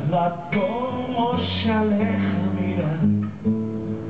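Solo acoustic guitar played through a PA, chords ringing over held bass notes, with a wordless vocal line gliding over it in the first half.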